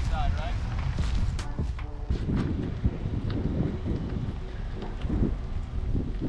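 Wind buffeting the microphone, a heavy uneven low rumble, with faint voices talking in the background.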